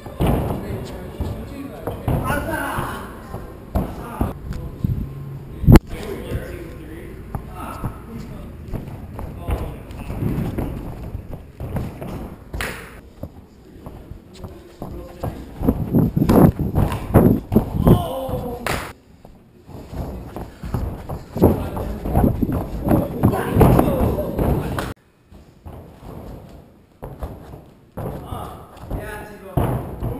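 Tricksters' bare feet and bodies landing on a padded gym floor in repeated thuds, with one sharp, loud impact about six seconds in. Voices talking and shouting are heard throughout.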